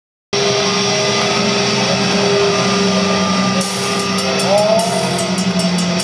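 Heavy metal band playing live and loud in a concert hall: a distorted low note held steadily, with cymbal strikes joining a little past halfway.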